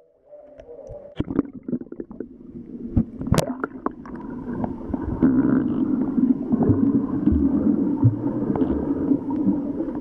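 Muffled underwater sound of water moving around a submerged camera while snorkeling: scattered clicks and knocks for the first few seconds, then a steady rumble and gurgle that grows louder about five seconds in.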